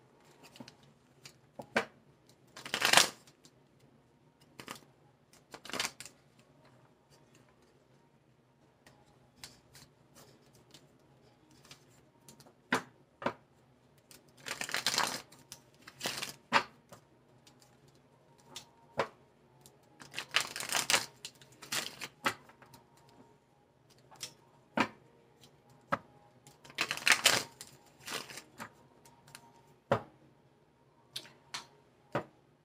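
A tarot deck being shuffled by hand: irregular bursts of card-on-card crackle and slapping, several longer shuffles a few seconds apart with quiet gaps and small clicks in between.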